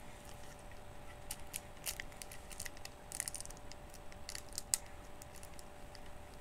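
Scattered light clicks and rustles close to the microphone, irregular in spacing, over a faint steady hum.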